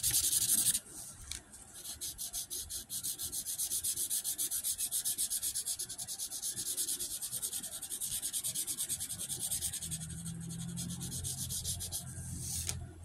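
Rapid, even rubbing or scratching close to the microphone, several short strokes a second. A low steady hum joins about ten seconds in.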